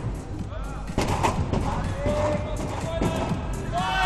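A gymnast's hands and feet striking a sprung tumbling track in a series of sharp thuds during a fast tumbling pass, the loudest about a second in, with more near three seconds. Arena music and crowd voices run underneath.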